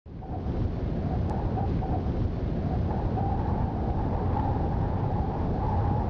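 Wind buffeting the microphone: a steady low rumble with a faint wavering whistle above it.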